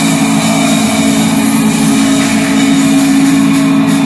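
Live rock band's amplified sound through the stage PA, held on a loud, steady low drone with no drumbeat.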